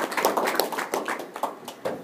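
Applause from a small audience, many quick overlapping hand claps, thinning out near the end.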